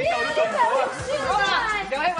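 Only speech: people talking in Cantonese.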